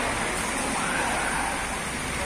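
Steady background hubbub, a dense even noise with faint indistinct voices in it.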